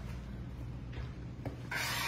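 Felt-tip marker scribbling on the cardboard of a pizza box lid: a couple of faint ticks, then rasping rubbing strokes starting near the end.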